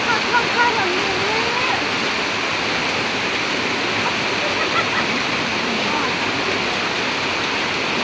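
Steady rush of heavy rain and water running across a paved street, with faint voices in the background.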